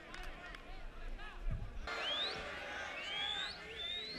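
Faint open-air football ground ambience: scattered distant voices shouting. About two seconds in, the sound changes abruptly and a few short rising whistles follow.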